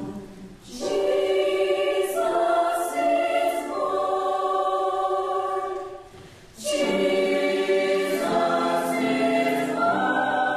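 Mixed choir of men's and women's voices singing sustained chords, with two short breaks between phrases, about half a second in and again around six seconds in.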